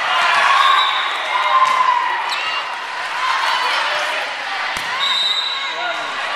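Volleyball rally in a gym: players and spectators calling out and shouting over one another, with the smack of the ball being hit a few times, the sharpest hit near the end.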